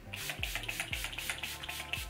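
Pump-mist setting spray spritzed onto the face over and over in quick succession, a rapid run of short hisses, over background music with a steady beat.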